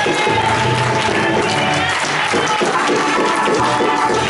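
Church music with held organ chords, a crowd clapping and cheering along.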